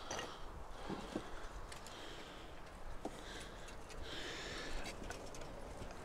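A small garden fence being set up by hand: a few faint taps and rustles, about one second in and again about three seconds in, over a quiet outdoor background.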